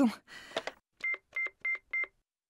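Phone keypad beeps: four short, identical beeps in quick succession, starting about a second in, as a number is dialled to place a call.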